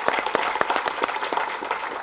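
Audience applauding: many people clapping at once in a dense, even run of hand claps.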